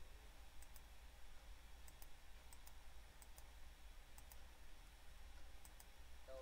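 Near silence with faint, sharp clicks in pairs, a computer mouse button pressed and released, about six times, spread across a few seconds.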